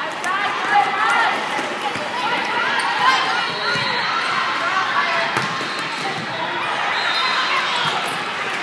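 Volleyball being played in a large sports hall: a steady mix of indistinct voices from players and spectators, with a few sharp thuds of the ball being struck during the rally.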